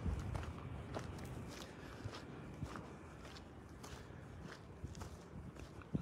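Faint footsteps on dry, stony dirt, a regular step about every half second or so, over a low steady rumble.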